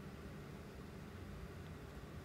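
Faint steady low hum and hiss of room tone, with no distinct sound event.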